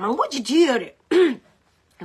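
A person clearing their throat, with short voiced sounds, over about the first second and a half.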